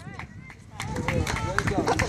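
Spectators' voices outdoors: indistinct talk and calls, quieter for the first half second and then picking up.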